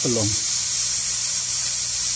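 Corona discharge of a 40,000-volt homemade ion generator, hissing steadily, with a constant low hum underneath.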